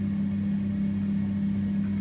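Steady, even electric hum of an egg incubator running, with a constant low tone and no change over the two seconds.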